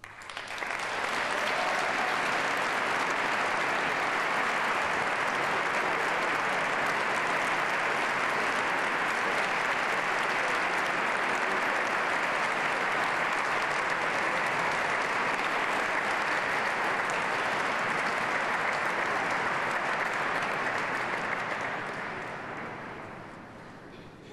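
Concert audience applauding: clapping breaks out all at once, holds steady for about twenty seconds, then dies away over the last few seconds.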